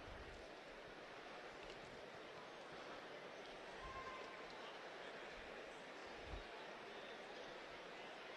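Faint, steady arena background noise, a low murmur of a distant crowd, with a soft thump a little after six seconds in.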